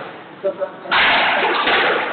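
A squash ball being hit back and forth with rackets, sharp hits against the court walls, followed by a loud rush of noise from about a second in.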